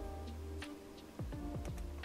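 Quiet background music: sustained tones over a steady beat of soft low thumps.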